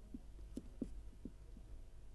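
Marker pen writing on a whiteboard: a few faint, short taps and scratches as the strokes of the letters are made, over a low steady electrical hum.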